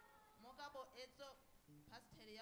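A woman's high-pitched voice, faint, with a wavering, gliding pitch held for about a second and a half before breaking off.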